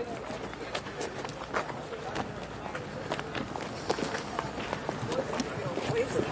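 Footsteps of a group walking on dry dirt, many irregular scuffs and steps, with indistinct voices talking in the background.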